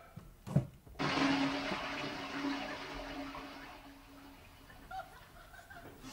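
A newly fitted toilet cistern, fitted as a quiet model, flushing. A short knock comes about half a second in, then about a second in a sudden rush of water with a steady low hum under it, fading away over the next three seconds.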